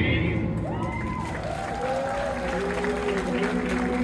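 Stage dance music thins out at the start, and audience applause and crowd noise follow, with a voice rising and falling over them.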